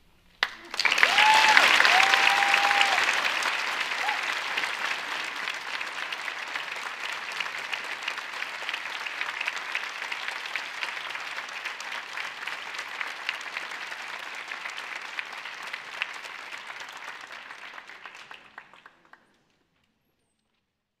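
Audience applause in an auditorium, starting sharply with a couple of brief cheers in the first few seconds. It is loudest at first, thins out gradually, and stops about a second before the end.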